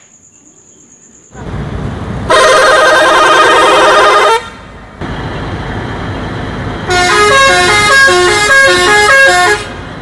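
Indonesian tour bus sounding its air horns over its running engine. First comes one loud held horn blast of about two seconds. After a pause, a multi-note 'telolet' horn plays a quick stepping tune for nearly three seconds.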